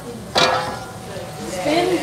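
A single sharp clack of hard kitchen ware about a third of a second in, followed by faint talking near the end.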